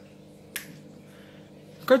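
A single short, sharp click about half a second into a pause, over a faint steady room hum; a man's voice starts again near the end.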